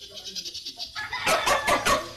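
A Muscovy duck gives a rapid run of loud, harsh squawks in the second half.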